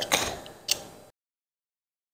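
Hands handling small plastic model-kit parts: a brief rustle and one sharp click about two thirds of a second in, then the sound cuts off to dead silence about a second in.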